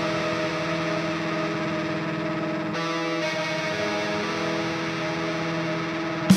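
A progressive metalcore track in a quieter break: distorted electric guitar chords held and ringing through effects and echo, with no drums, changing to a new chord about three seconds in.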